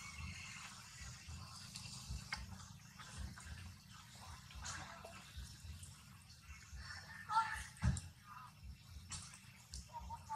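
Faint outdoor background with distant, indistinct human voices, and two brief louder sounds about seven and a half and eight seconds in.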